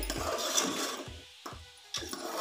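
A spoon stirring and scraping mutton pieces in masala against the side of an aluminium pressure cooker, a rough clicking scrape that eases off after about a second, with a couple of sharp knocks of the spoon on the pot.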